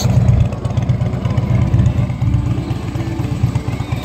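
Harley-Davidson Electra Glide Ultra Limited's Twin Cam 103 V-twin running at idle through Vance & Hines mufflers, a steady low, pulsing exhaust note.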